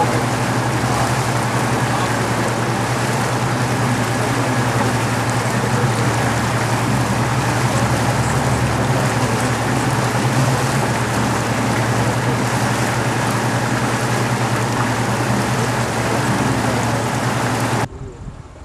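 Boat engine running at a steady drone under way, with a loud even rush of wind and water over it.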